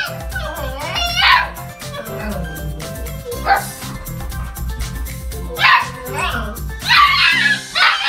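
A husky vocalizing in several short bursts of rising and falling pitch, over background music with a steady beat.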